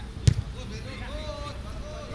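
A football kicked hard: one sharp thud of boot on ball about a quarter second in. A voice calls out after it.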